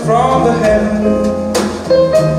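A male voice singing a song in English into a microphone, backed by a live ensemble of violins, cello and accordion.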